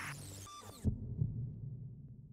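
A swooshing sound effect cuts off with a single low thump a little under a second in, followed by a couple of softer low thuds over a steady low hum.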